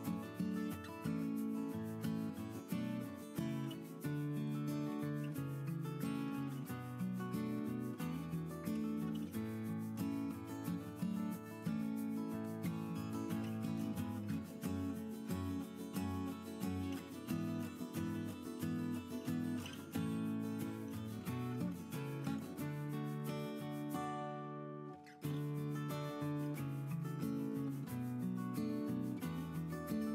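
Background music with held chords and a regular beat, with the high end briefly dropping out late on.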